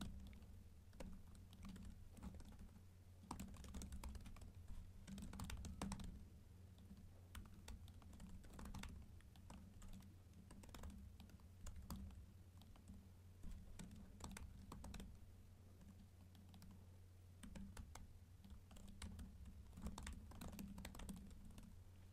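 Faint typing on a computer keyboard: irregular runs of key clicks with short pauses, over a low steady hum.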